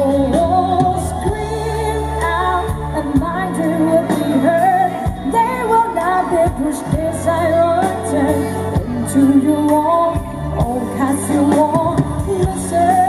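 A woman singing a pop song live into a handheld microphone, backed by band accompaniment with drums keeping a steady beat.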